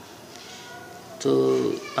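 Mostly speech: a man says one drawn-out word with a falling pitch about a second in, over faint background noise.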